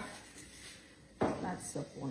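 A woman's voice, speaking briefly in Romanian about a second in, after a moment of faint room tone.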